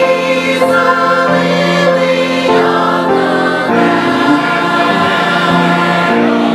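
Mixed church choir singing a hymn in parts, holding long notes that change chord every second or so.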